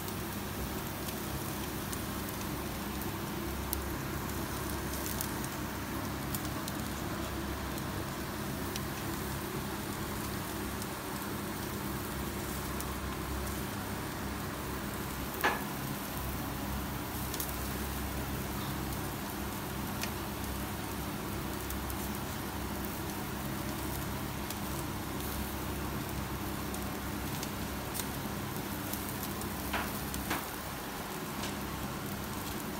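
Yakitori skewers sizzling over the burners of a commercial gas grill, an even crackling rush under a steady hum, with a few small pops and one sharp pop about halfway through.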